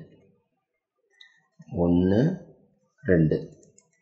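A man speaking in two short phrases, a little under two seconds in and again about three seconds in, with one faint click about a second in.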